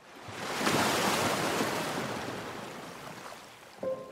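A single wave crashing, swelling in about a second and then slowly washing away. Near the end a held musical note comes in.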